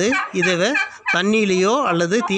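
A man's voice talking continuously, close to the microphone.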